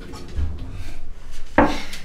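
Scattered knocks and rubbing sounds, with a low thud about half a second in and a loud sharp hit near the end.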